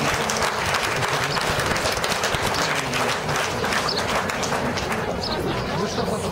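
Crowd applauding steadily, a dense run of many hands clapping.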